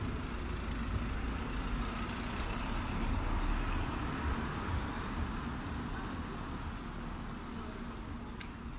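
Steady city street noise: a low hum of traffic, swelling slightly about three seconds in.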